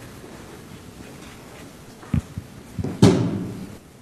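Hushed snooker-arena room tone, broken by a single dull thud about two seconds in and a brief, louder pitched sound about three seconds in that fades away within a second.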